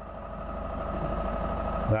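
Wind buffeting the microphone: a low rumble that grows steadily louder over the two seconds, over a faint steady hum.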